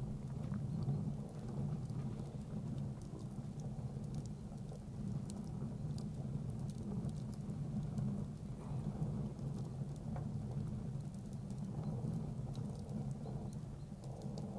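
Wood fire in a steel chiminea crackling with frequent small sharp pops, over a steady low hum.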